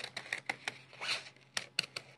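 Paper scissors cutting through stiff mini-flute corrugated paper: a string of short, crisp snips and crunches, irregularly spaced, as the blades work slowly through the hard-to-cut board.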